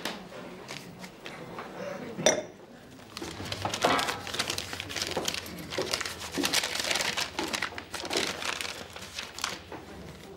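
Paper crinkling and rustling for several seconds as a small paper-wrapped item is handled and opened at a bar counter, with light clinks of glass and dishes around it. There is a single sharp click about two seconds in.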